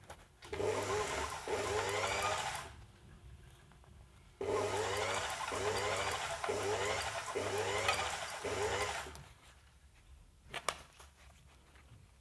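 Furrier's fur sewing machine stitching the edges of a fox-fur strip together into a tube, running in two spells: a short one of about two seconds, then one of about five. In each spell the motor's whine rises again and again, roughly once a second, as it speeds up in short pulses. There is a single sharp click near the end.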